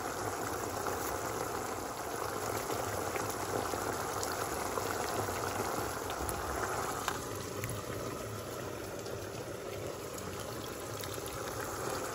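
A pot of rice in tomato-paste broth bubbling at a steady boil, with a continuous crackle of bursting bubbles.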